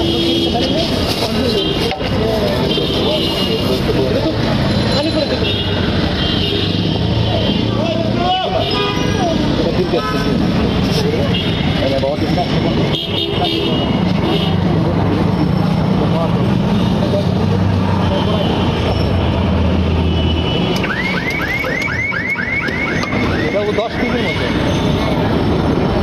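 Busy market street noise: people talking in the background, vehicle engines running and horns tooting, with a few sharp knocks along the way. Near the end comes a rapid run of high repeated chirps, about four a second.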